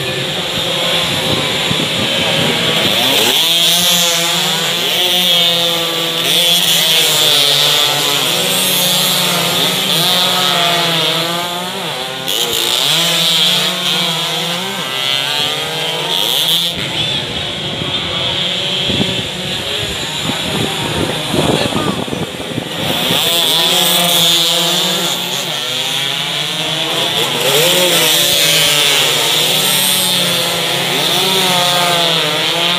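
Several two-stroke underbone race motorcycles screaming at high revs as they pass in groups, their pitch rising and falling with each gear change and pass. The engines come through in several loud waves, easing off for a few seconds past the middle.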